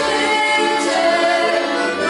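Three young voices singing a song together, accompanied by two piano accordions.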